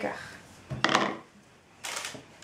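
Kitchen bowls handled on a wooden table: sugar tipped from a small plastic bowl into a plastic mixing bowl with a short clatter about a second in, then a sharp knock near the end as the small bowl is set down on the table.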